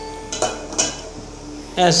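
A metal slotted spoon clinks lightly against a steel pot while stirring sugar syrup, twice, about half a second and about a second in.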